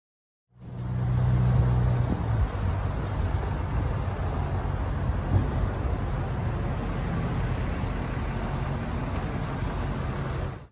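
Outdoor traffic noise of cars and pickup trucks running around a busy fuel station forecourt. It fades in about half a second in, with a low engine hum that is strongest in the first couple of seconds.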